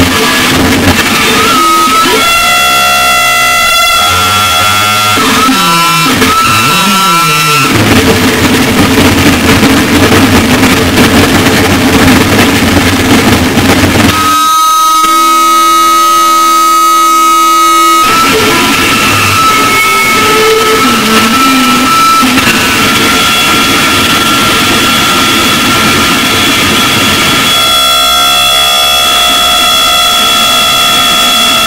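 Live harsh noise electronics: a loud, unbroken wall of distorted noise laced with high feedback whistles. Pitches sweep up and down several seconds in, and the texture cuts abruptly to a different block about halfway through and again near the end.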